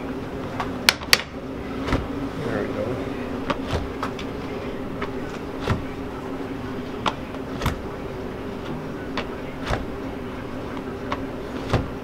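Hot hard candy being pulled by hand over a metal wall hook, with scattered short clicks and soft knocks as it is handled, the sharpest about a second in. A steady low hum of kitchen equipment runs underneath.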